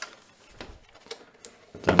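Plastic casing of a desktop UPS being turned over in the hands, with a few faint knocks and rubs against the table.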